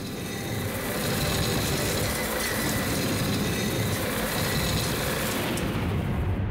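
Steady mechanical grinding and running noise of a steam-driven mirror-grinding machine, a sound effect for its rotating mirror and abrasive disc.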